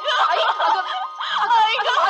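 Several women's voices overlapping in agitated, wordless cries and exclamations as they scuffle and grapple with one another.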